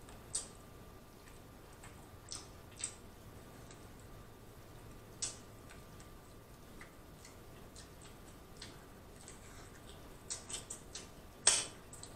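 Faint, sparse wet mouth clicks and lip smacks of someone chewing crab meat, a single click every second or two, then a quick run of louder smacks near the end.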